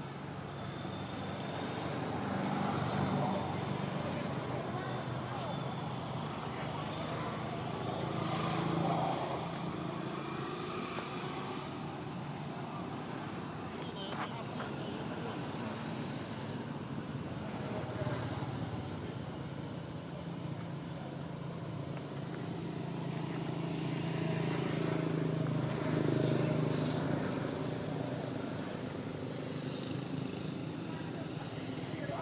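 Background voices of people talking over a steady low vehicle hum, with one brief high, falling squeak about eighteen seconds in.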